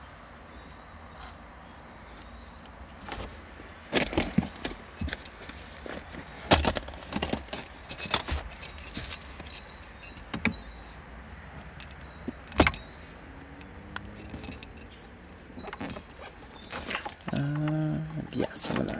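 Plastic heat-shrink butt connectors and wire ends being handled and fitted, clicking and rattling now and then over a low steady hum.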